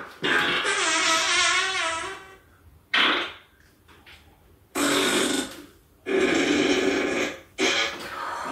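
A series of fart sounds, five in all. A long one with wavering pitch lasts about two seconds, then shorter ones follow a second or two apart.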